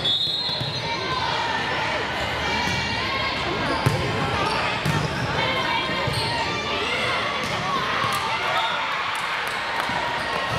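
Volleyball rally in an echoing gym: the ball is struck by hands with sharp smacks, the loudest about four seconds in, over steady chatter and shouts from players and spectators.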